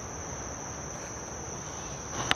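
Insects calling in one steady, unbroken, high-pitched drone.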